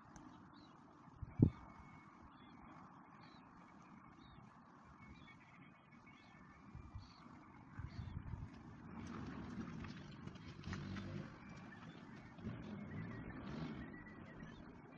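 Faint outdoor background noise, with a single sharp knock about a second and a half in and a low rumble that swells from about eight seconds in and stays to the end.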